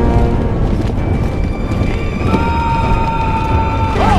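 Film soundtrack music with a long held note through the second half, over a dense low rumble of an army on the field with horses.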